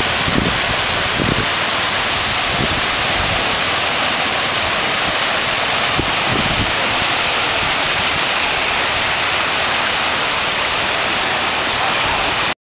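Small waves breaking in the shallows and washing up a sandy beach, making a steady, loud hiss of surf.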